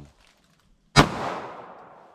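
A single pistol shot from a Smith & Wesson Shield EZ firing .380 ACP, about a second in, sharp, with its echo fading away over the following second.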